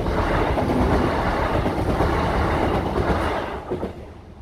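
A Class 170 Turbostar diesel multiple unit passing close by over a level crossing. Its wheels and running gear make a loud, steady rush of noise that fades away quickly about three and a half seconds in, as the last car goes by.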